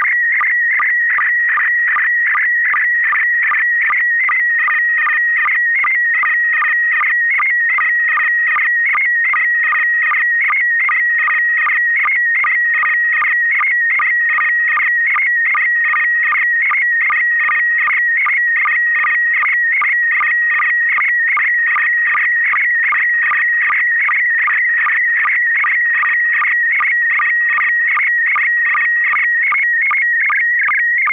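Slow-scan TV (SSTV) picture signal: a continuous electronic tone near 2 kHz whose pitch wavers with the image content. It is broken by evenly spaced short low sync pulses, a few per second, as the picture is sent line by line.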